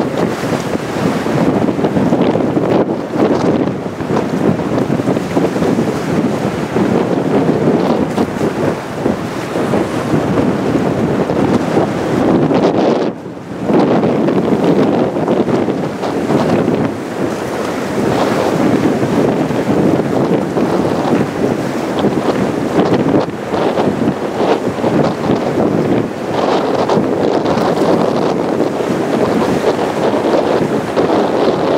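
Strong wind buffeting the camera microphone, with choppy sea beneath it: a loud, steady rushing that dips briefly about thirteen seconds in.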